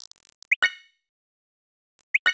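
Faint tapping of an on-screen keyboard, then about half a second in a text-message sent sound: a short rising chirp into a bright ringing pop that fades quickly.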